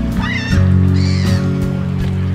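Background music with sustained low chords, with short sliding high calls over it about a quarter second in and again about a second in.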